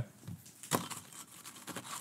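Tortilla chips being handled and picked out of glass bowls: faint crinkling and rustling, with one sharp crisp click about three-quarters of a second in.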